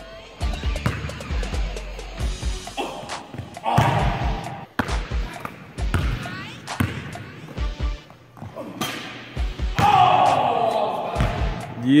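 Basketball dribbled on a hardwood gym floor: a run of irregular bounces and sharp thuds, heard over background music and some voices.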